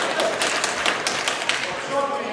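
Gloved punches landing in a heavyweight boxing exchange: a quick, uneven series of sharp slaps, about eight in two seconds, over shouting voices.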